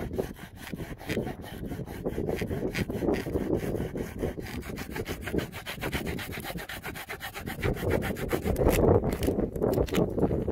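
Small folding hand saw cutting through a dry, weathered driftwood log in quick, even back-and-forth strokes, getting louder near the end as the cut goes through.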